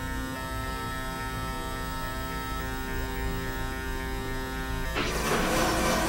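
Experimental electronic drone music from synthesizers: a chord of held tones over a low pulsing rumble, with a few faint sliding tones. About five seconds in, a harsh noisy wash breaks in over it.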